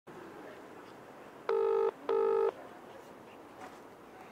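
British telephone ringing tone heard down the line: one double ring, two short equal bursts a fifth of a second apart, over faint line hiss while the call waits to be answered.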